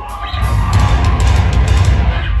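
Deathcore band playing live at full volume: down-tuned electric guitars, bass and drums in a dense, continuous wall of sound, heaviest in the low end.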